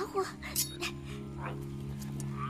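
A tiger cub whimpering in short cries near the start, over a steady low music drone.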